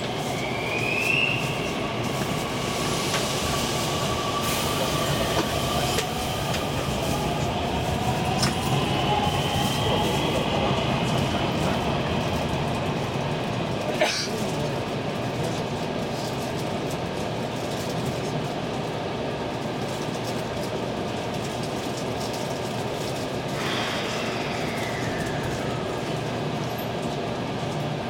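Cabin noise inside an electric train slowing and standing at a station: a steady rumble with faint electric motor whines gliding in pitch, one sharp click about halfway through, and another gliding whine near the end as it pulls away.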